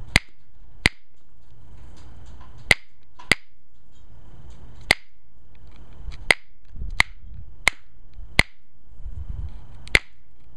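Alibates flint being pressure-flaked with a copper-tipped flaker: a series of about ten sharp clicks at irregular intervals, each one a flake popping off the edge.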